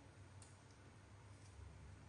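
Near silence: low room tone with two faint, sharp clicks, about half a second in and again a second later.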